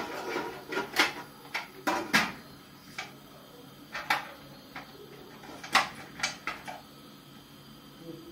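Pressure cooker lid being set on the steel pot and locked down: a string of sharp metal clicks and clanks, irregularly spaced, the loudest about a second in and about six seconds in.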